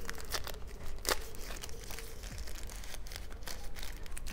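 Thin plastic wrapping crinkling as it is pulled off a small battery pack by hand, a run of quick, irregular crackles.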